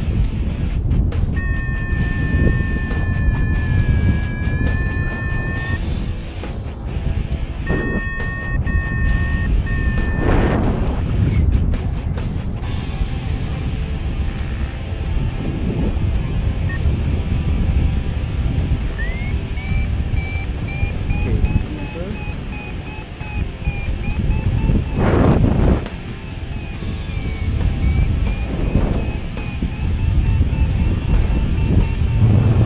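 Wind rushing over the microphone of a paraglider in flight, with an electronic variometer beeping in spells: a few seconds in, again around ten seconds, and through the last third, rising in pitch as it starts. The beeping is the sign of climbing in a thermal.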